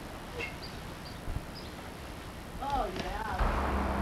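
Outdoor camcorder sound: a low, uneven rumble from the handheld camera moving, with a few faint high chirps about a second in. Near the end a short gliding voice sounds, followed by a louder rush of noise.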